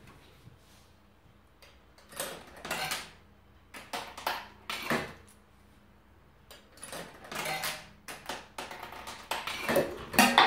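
Coins going into a Lars Berg Spar 7 coin-flick machine and rattling through its mechanism. There are four short bursts of clicking and rattling, each a second or two apart.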